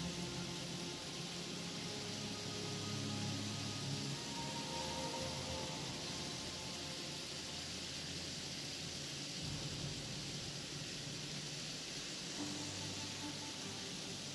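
Several model trains running together on a tabletop layout, a steady hiss of wheels and motors on the track, with faint music underneath.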